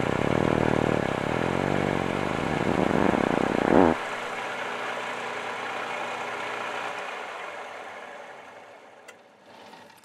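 Metal lathe taking a cut on a steel bar with a high-speed-steel tool, giving off loud weird noises, a buzzing with a wavering pitch, that stop abruptly about four seconds in. The lathe then runs on more quietly and spins down, fading away near the end.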